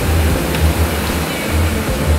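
Steady whooshing of air-bike fans being pedalled hard, over background music with a heavy bass.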